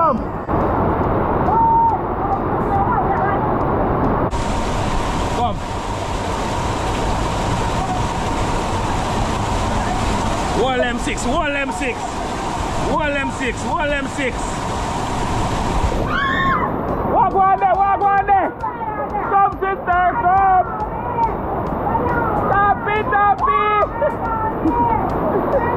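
River water rushing down a small rock cascade as a steady noise. It grows louder and hissier from about four seconds in until about two-thirds through, as it is heard close to the falling water. People's voices come in over it in the second half.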